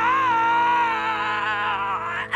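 An animated character's long, high-pitched wailing cry, one unbroken note that wavers near the end and cuts off suddenly, over steady background music.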